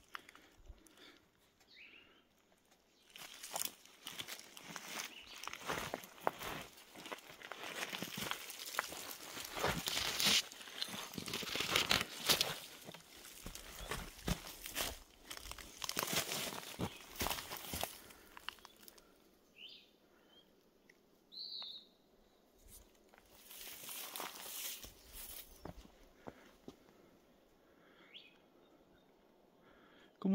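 Footsteps crunching on loose rocks, gravel and dry leaves, with brush rustling, as someone walks over rough ground. The steps are dense through the first half or so, then thin out to a few scattered crunches.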